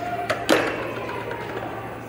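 Two hard knocks of a plastic ring against the exhibit's table and steel disc, the second and louder about half a second in, followed by a short ringing tail over a steady low hum.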